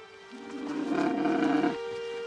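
A dromedary camel's grunting call lasting about a second and a half, over sustained background music.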